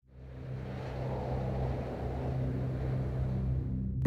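Low, steady rumble with a deep hum, fading in from silence over the first second and swelling slightly.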